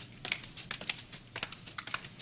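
Light, irregular footsteps of a person walking across a small room: a scatter of soft taps and clicks.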